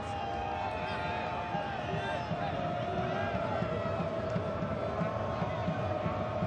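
Stadium crowd murmur and chatter from many voices at once. One long held note runs through it from about a second in.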